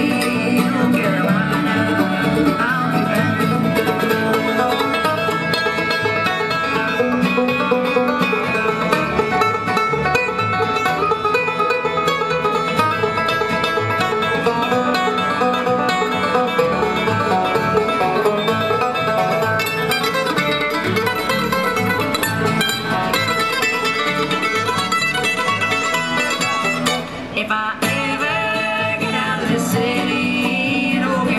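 A live bluegrass band of five-string banjo, mandolin, acoustic guitar and upright bass playing a song, with the banjo to the fore.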